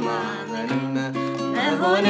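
Acoustic guitar strummed, its chords ringing steadily, accompanying a worship song; a singing voice comes in again about one and a half seconds in.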